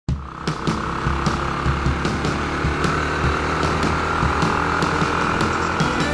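Yamaha YB125SP's single-cylinder 125 cc four-stroke engine running steadily under way, with the hiss of tyres on a wet road and scattered light knocks.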